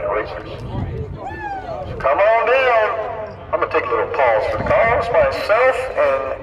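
A man's voice talking over a low background rumble.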